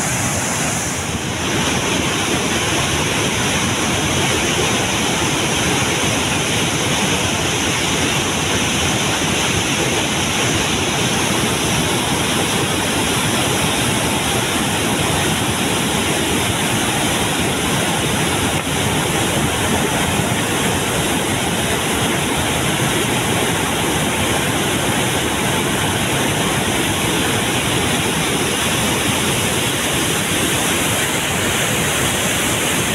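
Floodwater released through a dam's spillway gates rushing downstream as a churning white-water torrent: a loud, steady rush with no break.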